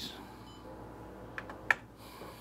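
Two short clicks about a third of a second apart as the copier's touchscreen control panel is pressed, the second louder with a brief high key-press beep, over the steady low hum of the idling Xerox WorkCentre 7830 colour copier.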